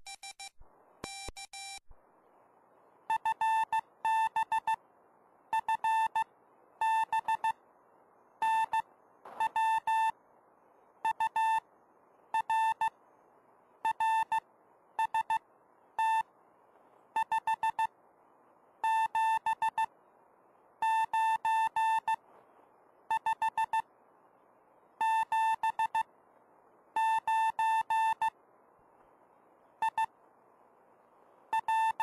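Morse code (CW) from a 40 m RockMite QRP transceiver's speaker: a single beeping tone keyed in dots and dashes, in groups that make up characters, over a faint receiver hiss. A few brief lower-pitched tones come first; from about three seconds in, a slightly higher tone keys on steadily.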